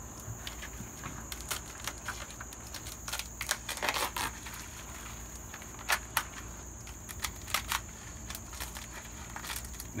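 Dry, brittle skin of a luffa gourd being cracked and torn off by hand in irregular crackles and snaps, loudest about four seconds and six seconds in.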